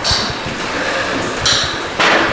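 VW Golf 6 1.4 TSI engine idling steadily and smoothly, quiet for a TSI, with its timing chain newly renewed in a rebuild. Two brief sharp high noises come at the start and about one and a half seconds in.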